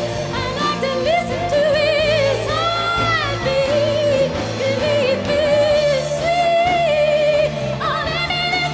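A woman singing lead vocals with a live band, her held notes wavering with vibrato over electric bass notes.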